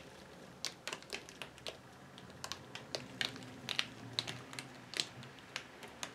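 Faint, irregular light clicks and taps, about two or three a second, from a stretched canvas being handled and tilted in gloved hands.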